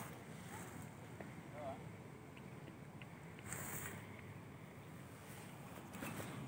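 Low wind rumble on a phone microphone, with a faint rustle about three and a half seconds in.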